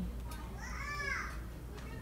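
A child's high voice in the background calling out once, rising then falling in pitch over about a second, over a steady low hum.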